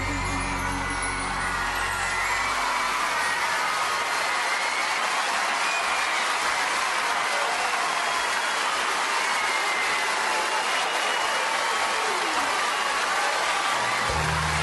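A theatre audience applauding and cheering as the music of a song-and-dance number ends in the first few seconds. The bass-heavy music starts up again at the very end.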